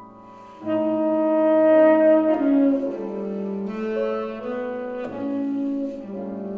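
Saxophone and piano duet: after a soft piano chord, the saxophone comes in less than a second in and plays a melody of held notes that step up and down, with the piano accompanying.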